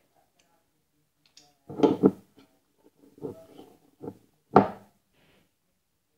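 A knife knocking and scraping against a plate while chocolate spread goes onto small pieces of bread. It comes as a handful of short clatters, the loudest about two seconds in and again about four and a half seconds in.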